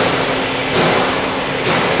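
Steady factory-hall background noise: an even hiss with a faint low hum, swelling briefly twice.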